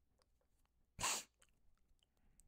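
One short, sharp rush of breath through a person's nose, about a second in, from someone bothered by a sore scab inside his nose.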